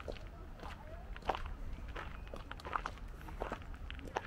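Footsteps at an even walking pace, a step about every two-thirds of a second, with people's voices in the background.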